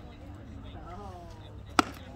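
A pitched baseball, clocked at 87 mph, smacking into the catcher's leather mitt: one sharp pop near the end, over faint crowd voices.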